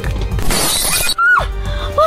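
A sudden, loud crashing sound effect with a shattering quality, about half a second long, over background music.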